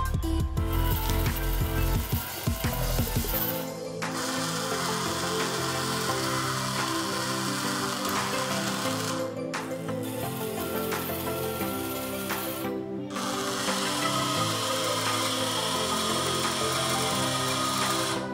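Background music over small geared DC motors running, driving the robot's tracks and its plastic-geared gripper. The motor noise drops out briefly three times while the music carries on.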